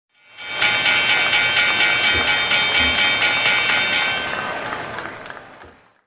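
Electronic sound-logo sting: a bright, sustained synthesized chord that pulses about four times a second, then fades out over the last two seconds.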